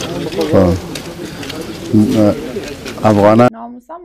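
Men talking outdoors over steady background hiss, as heard in a field news recording. About three and a half seconds in, the background noise cuts off abruptly and a woman's voice takes over in a quiet room.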